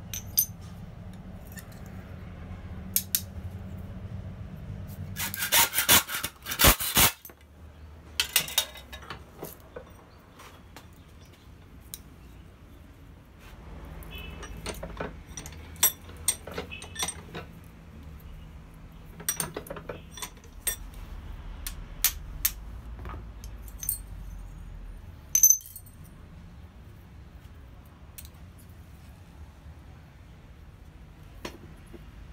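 Small steel pieces clinking, knocking and scraping against a steel anvil and vise as the stainless steel pipe casing is worked off a forge-welded tool-steel billet. A dense run of metal knocks comes about six seconds in, then scattered taps, over a low steady hum.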